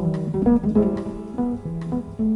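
Acoustic double bass played pizzicato in jazz: a melodic line of single plucked notes at changing pitches, about four or five a second.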